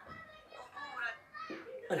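Quiet speech: a child's voice talking briefly.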